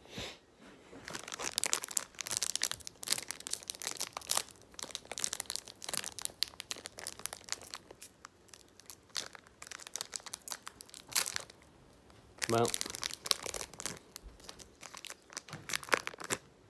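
Foil Pokémon TCG booster pack wrapper being torn open and crinkled by hand: a dense run of crackles and rips.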